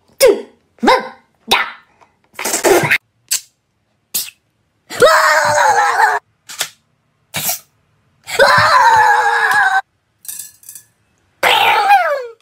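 A man coughs several times in short bursts, then lets out two long, loud yells, each falling in pitch, and a third begins near the end.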